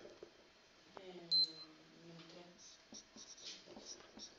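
Felt-tip marker writing on a whiteboard, with one short high squeak about a second in and soft scratchy strokes after it. A faint voice is heard in the background.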